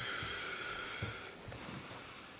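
A man's long, breathy exhale lasting about a second and a half, followed by a couple of soft thumps.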